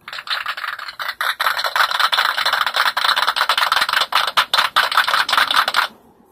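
Applause sound effect: a crowd clapping in a dense, steady patter that starts and cuts off abruptly.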